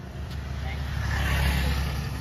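A road vehicle passing close by: its engine rumble and tyre noise swell to a peak about one and a half seconds in, then fade.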